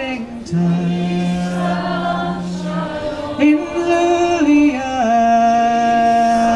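Unaccompanied singing of a slow melody in long held notes, each lasting about one to two and a half seconds. The last note, starting about five seconds in, is held steadily.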